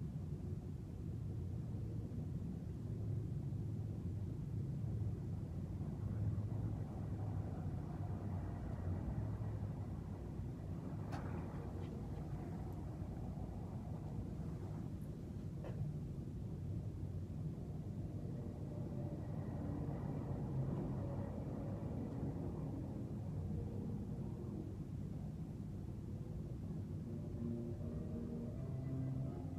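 Steady low room rumble with a faint hum, and a couple of soft clicks near the middle.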